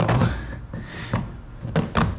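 Hands patting and pressing on a kayak seat wrapped in nylon webbing straps: a few short, dull knocks.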